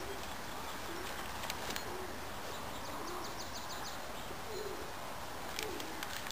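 A bird cooing outdoors in short, low notes, about one a second, over a steady background hiss. A brief high trill of quick ticks sounds about three seconds in.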